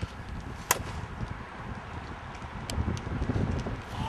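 Golf iron striking a Birdie Ball, a plastic practice ball, off a hitting mat: one sharp crack about a second in, with wind rumbling on the microphone.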